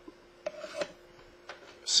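Faint rubbing and a few soft, short knocks from a person shifting in a chair and handling things nearby, over a faint steady hum.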